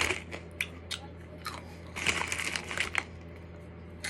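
Honey BBQ Fritos Flavor Twists corn chips being chewed close to the microphone: crisp crunching, heaviest just at the start and again from about two to three seconds in.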